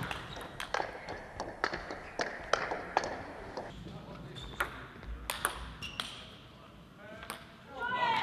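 Table tennis rally: a quick run of sharp ball clicks off bats and table, thinning out after about six seconds. Near the end a voice calls out.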